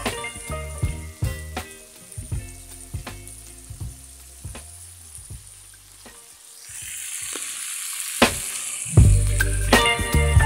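Beef strips and green beans sizzling as they fry in a pan. Background music with a beat fades out after about six seconds, and the sizzling hiss is heard clearly on its own before the music comes back loudly near the end.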